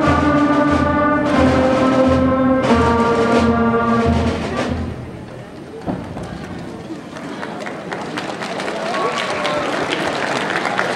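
School concert band of clarinets and brass, with low drum beats underneath, playing the last sustained chords of a piece, which ends about halfway through. Then audience applause and murmuring build up.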